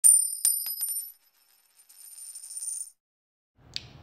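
Title-card sound effect of bright, high metallic chimes: a few quick strikes in the first second ringing on as high tones, then a softer high sparkle that stops just before three seconds.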